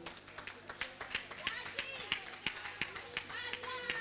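Footsteps and scattered light taps as someone walks up, under faint, indistinct voices of a congregation.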